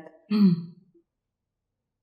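A woman clearing her throat once, briefly, about a third of a second in.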